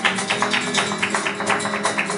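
Live flamenco: acoustic guitar playing under dense, rapid percussive strikes, several a second, from hand-clapping (palmas) and dance footwork.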